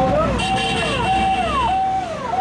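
A voice speaking in short phrases, each held on one pitch and then falling, over a steady low hum.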